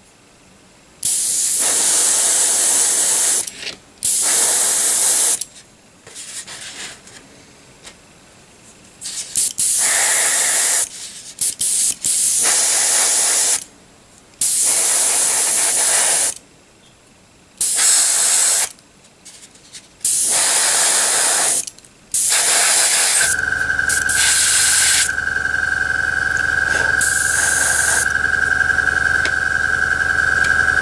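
Gravity-feed airbrush spraying paint in about eight short bursts of hiss, each a second or two long and cut off sharply as the trigger is released. In the last quarter a steady motor hum with a high whine starts up under the spraying.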